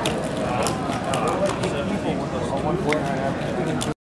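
Background chatter of many voices in a large hall, with scattered sharp clicks throughout; the sound cuts off abruptly just before the end.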